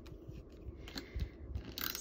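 Paper craft pieces being handled on a wooden table: light taps and paper rustle, a soft thump a little past the middle, and a brief papery scrape near the end.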